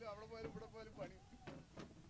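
Faint voices talking in the background, low and indistinct, with no other clear sound.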